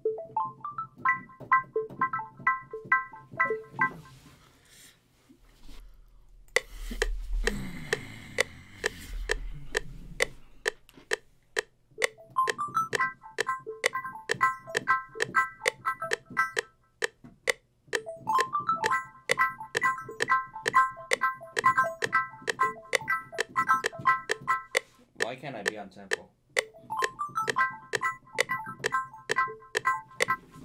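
A synth pluck sound playing fast repeated chord notes in bursts of a few seconds each, over a steady ticking beat that enters about six seconds in. A deep bass note with a downward pitch slide sounds briefly between about seven and ten seconds.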